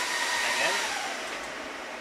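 Cooling fans of an IBM x3650 rack server running at high speed just after power-on, a steady whooshing noise with a faint whine, easing down a little over the two seconds. A sharp click comes right at the start.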